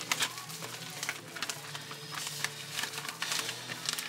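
Plastic crinkling and rustling: a cling-film-wrapped package of ground venison being handled and slid into a plastic zip-top freezer bag, with many small irregular crackles. A steady low hum runs underneath.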